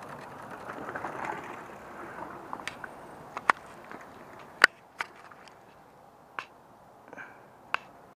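A mountain bike's tyres rolling over a dry, leaf-covered dirt trail as the rider passes close by and fades off. After that come about six sharp, separate clicks and snaps, the loudest about three and a half and four and a half seconds in.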